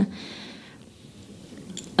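Brief pause in a woman's speech: faint room noise, with a soft hiss in the first half-second that fades away.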